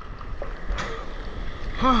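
Broken surf whitewater fizzing and washing around a camera held at water level, with a small splash about a second in. A short 'oh' is called out near the end.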